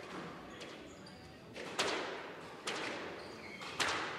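Squash rally: the ball cracks off rackets and the court walls, each strike ringing on in the enclosed court. Faint hits come early, then three loud strikes about a second apart in the second half.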